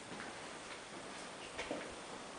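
Light footsteps on a hard floor, about two short clicks a second, the loudest near the end, over a faint room hiss.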